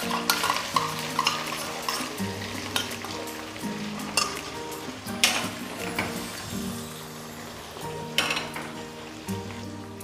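Ground spice pastes sizzling in hot oil in a kadai, a steady frying hiss with a few sharp clicks and spits.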